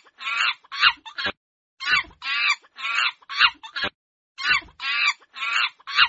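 A monkey calling: quick series of short, high calls in bursts of several, with brief pauses about a second and a half in and again near four seconds in.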